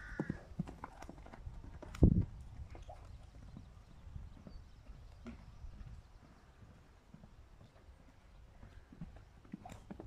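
Pony's hooves thudding irregularly on a sand arena as it moves around on the lunge, with one loud sharp thump about two seconds in.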